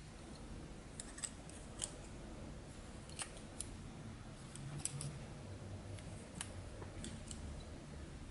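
Faint, irregular light ticks of fly-tying thread being wound from a bobbin over lead wire on a hook shank.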